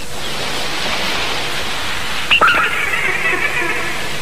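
Cartoon sound effect of surf rushing on a beach, a steady hiss of waves; a bit over halfway through a high held tone comes in over it.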